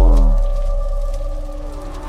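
Cinematic logo sting: a deep bass boom with several tones sliding down in pitch, settling into a steady held chord that slowly fades.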